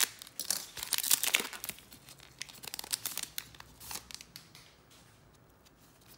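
Foil wrapper of a trading-card pack being opened and torn, crinkling in sharp bursts that are densest in the first second or so, come again around three and four seconds in, then die down near the end.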